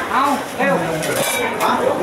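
Metal spatula clinking and scraping against a flat steel griddle while Thai roti pancakes fry on it, a few sharp clinks among the scraping.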